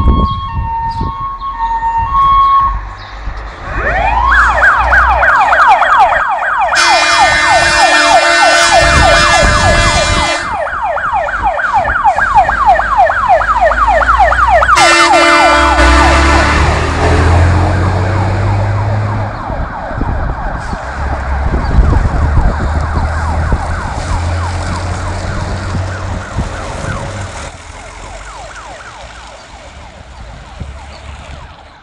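Jelcz fire engine's siren winding up with a rising wail, then sweeping quickly up and down on an emergency run. Two long horn blasts sound over it, the first about seven seconds in and the second near the middle, as the truck's engine rumbles past. The siren fades as the truck moves away near the end.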